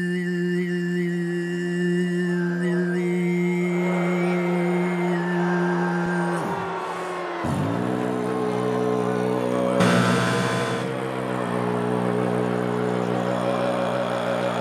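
Tuvan throat singing: one voice holds a steady low drone while a thin whistling overtone above it shifts from note to note. About six seconds in the drone slides down in pitch twice, then settles back, and a brief louder noisy burst comes about ten seconds in.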